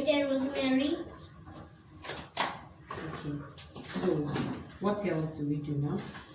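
Talking in a small room, with two short, sharp knocks about two seconds in.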